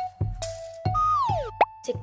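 Light children's background music with a steady beat and held notes, with a cartoon-style sound effect about a second in: a tone sliding downward in pitch, then a quick upward sweep.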